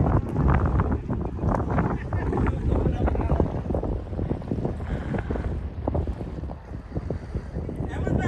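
Wind buffeting the camera microphone as a steady, gusting low rumble, with indistinct voices mixed in.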